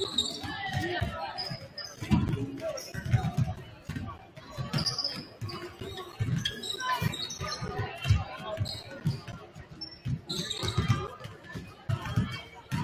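Many basketballs bouncing on a hardwood gym floor during team warm-ups: irregular, overlapping thuds from several players dribbling at once.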